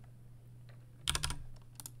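Computer keyboard keys tapped: a quick cluster of keystrokes about a second in and another near the end, over a low steady hum.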